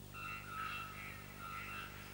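Birds chirping: a run of short, clear whistled notes at two or three pitches, over a steady low hum.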